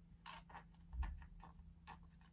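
A scratch stylus scraping across a scratch-art card in faint, short strokes, about five of them, with a soft low bump about a second in.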